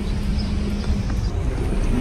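Steady low outdoor rumble with a low hum that fades out about a second in.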